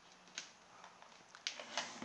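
A few faint, scattered clicks and taps as the toy helicopter and its remote control are handled.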